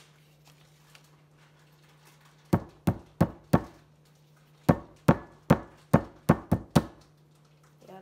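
A cardboard tube of refrigerated biscuit dough rapped against a countertop to split its seam: eleven sharp knocks in two runs, four and then seven. It opens without a loud pop.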